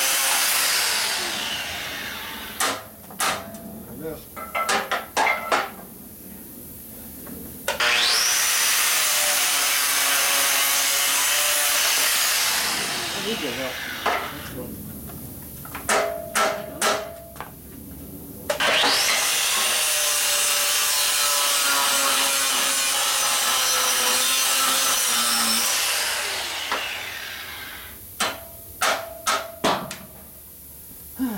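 Angle grinder with an abrasive cut-off disc cutting through steel in three long passes of several seconds each. In the pauses between passes come short runs of three to five hammer blows on the steel frame.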